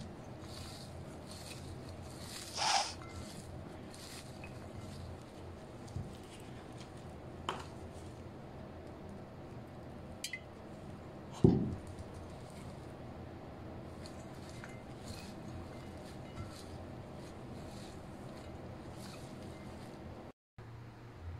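Hands working salad ingredients on a china plate: faint scattered rustling and pattering, a short hiss a few seconds in, a couple of light clicks, and one louder knock a little past halfway.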